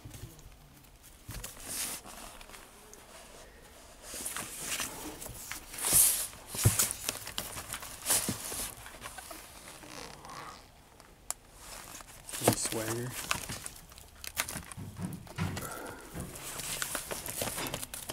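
Cardboard LP record sleeves sliding and rubbing against one another as they are flipped through in a plastic bin: a series of short papery swishes with a few sharp knocks.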